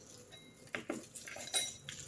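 Foil wrapper of a stock cube crinkling as it is peeled open by hand, with light clinks against a steel bowl, loudest about a second and a half in.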